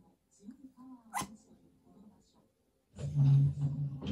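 Yorkshire terrier making soft vocal sounds, then a louder, low-pitched call of about a second near the end, pestering to be taken to bed. A sharp click comes just over a second in.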